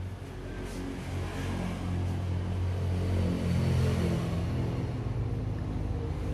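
Low engine rumble from a motor vehicle, swelling to its loudest about four seconds in and then easing slightly.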